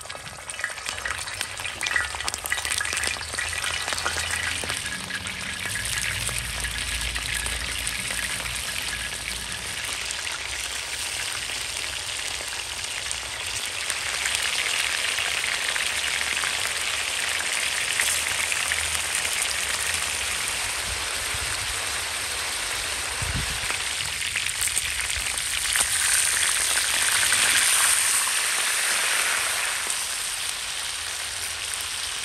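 Beef tail pieces sizzling as they fry in hot oil in a wide shallow pan, a steady hiss that swells as the pan fills. Near the end the pieces are stirred with a metal skimmer.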